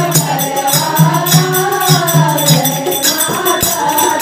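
A Hindu devotional bhajan sung by a group of women's voices in chorus, over a steady rhythmic beat and jingling hand percussion.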